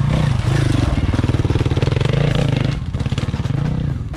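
Motorcycle engine running at low trail speed, its pitch rising and falling a little with the throttle and easing off near the end.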